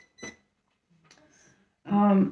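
Two very short, high electronic blips about a quarter second apart, followed by a pause; a woman's speech resumes near the end.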